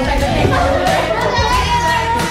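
A group of young women laughing and shouting excitedly together, over pop music with a steady beat.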